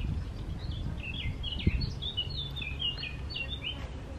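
A small bird singing a quick run of short, high chirping notes, starting about a second in and stopping just before the end, over a steady low background rumble.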